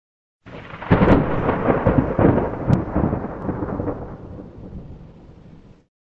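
Thunderclap sound effect: a sudden crack about half a second in, then crackling rumbles for a few seconds that die away, cut off just before the end.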